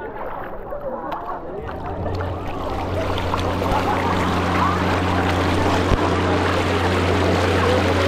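SeaDart electric bodyboard's thruster motor humming steadily, starting about two seconds in, while water rushes and splashes over the board as it picks up speed.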